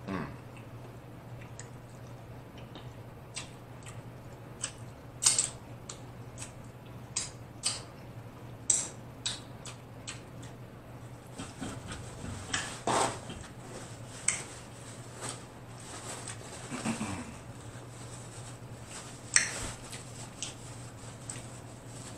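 Close-miked eating of sauce-coated shrimp: irregular wet mouth clicks and chewing smacks, one to a few each second, over a faint steady low hum.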